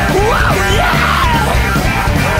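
Loud rock song from a full band with electric guitar, and a yelled vocal line sliding up and down in pitch over it.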